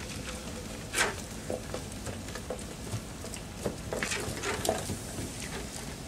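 Scattered small clicks, knocks and rustles of bottle, cup and food being handled at a table. The loudest is a sharp knock about a second in, with a cluster of smaller ones later on.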